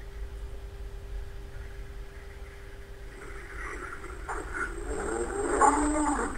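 A low steady rumble under a single steady hum that stops about halfway; faint indistinct sounds then build up toward the end.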